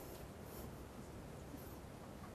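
Faint rubbing and rustling of clothing fabric as hands press and massage a person's lower back, over low room noise.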